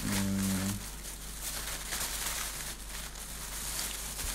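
A man's voice holding a short "mmm" hum of hesitation for under a second at the start. After it comes only a steady background hiss with a low, even hum.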